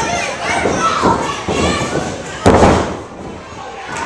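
A single heavy thud about two and a half seconds in, the loudest sound: a wrestler's body slamming onto the wrestling ring's canvas, the ring ringing briefly after it. Spectators' voices and shouts carry on around it.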